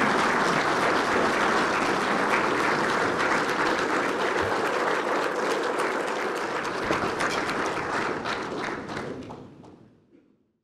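A large crowd of servicemen applauding, a dense, steady clapping that fades out near the end.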